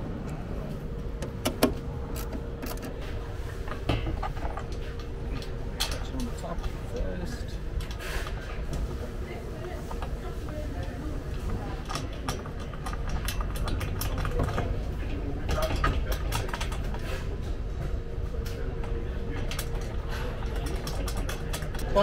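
Scattered clicks, light knocks and rattles of a hex key on a mount bolt and of a metal MOLLE grid panel being lifted and positioned, with one sharper click about a second and a half in. Under them runs a low steady rumble and a faint steady hum.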